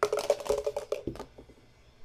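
A small plastic die rolled onto the table, clattering in a fast run of clicks that dies out after about a second; the roll decides which team the card goes to.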